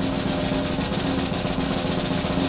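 Snare drum roll sound effect: a fast, even roll at a steady level.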